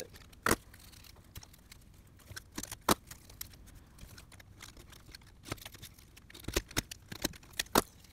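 Split leather washers of a stacked-leather hatchet handle being pried off the steel tang and dropped onto a wooden bench. The result is scattered sharp clicks and light knocks a second or more apart, with faint scraping between.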